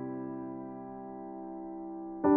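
Soft background piano music: a single held chord slowly fading away, with no new notes struck.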